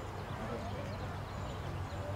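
Ballfield ambience between pitches: faint distant voices over a low steady hum, with no ball or bat impact.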